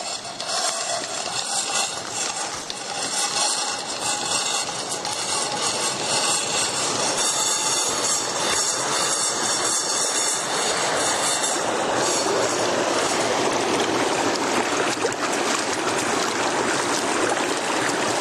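Fast-flowing creek rushing over rocks, a steady noise that fills out and grows more even about two-thirds of the way through.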